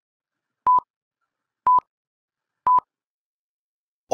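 Countdown-timer sound effect: three short, identical beeps at one pitch, one a second, counting down the seconds given to answer a puzzle.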